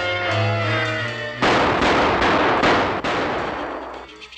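Cartoon soundtrack: a pitched music cue, broken off about a second and a half in by a loud, noisy sound effect with several sharp hits that fades away near the end.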